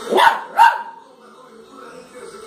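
A small dog barking twice in quick succession, two sharp barks about half a second apart.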